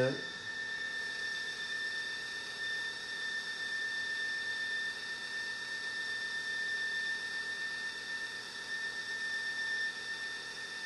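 Drive motors of a Meade DS114 telescope's motorized mount slewing toward its first alignment star: a steady, even high-pitched whine that holds one pitch.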